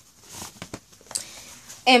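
Soft rustling and a few light taps as a book is taken out of its cover.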